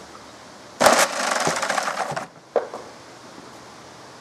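A shot from a drill-powered wooden spiral launcher. A sharp crack comes about a second in, followed by a dense, fast rattle lasting about a second and a half as a 25 mm steel ball is whirled around the wooden spiral by the spinning two-blade propeller. A single knock follows shortly after.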